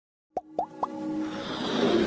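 Animated-logo intro sting: three quick upward-gliding bloop sound effects, each a little higher than the one before, then a swell that builds under electronic music.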